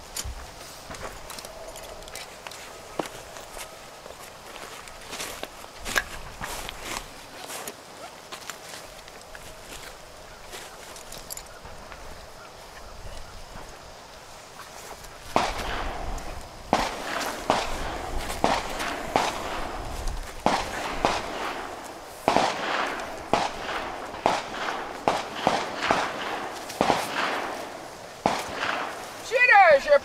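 Scattered sharp cracks over a quiet range in the first half. From about halfway through, indistinct talking by several people, louder than what came before.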